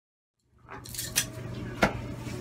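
Fabric rustling close to the microphone as a football jersey is pulled off over the head, with two short clicks, the second louder near the end.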